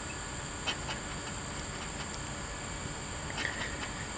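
A steady high-pitched insect drone, with a few faint scraping strokes of a scratcher on a scratch-off lottery ticket.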